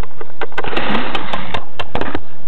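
Small plastic Littlest Pet Shop toy figure clicking and tapping against a wooden tabletop as it is moved by hand, with a burst of rustling handling noise about half a second in.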